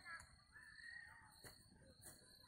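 Faint crow caws over a steady, thin, high-pitched whine.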